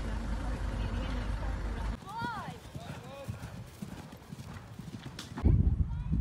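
A steady low rumbling noise, then a short call that rises and falls, and, in the last half second, a grey pony's hooves thudding in a quick rhythm as it trots on a dressage arena surface.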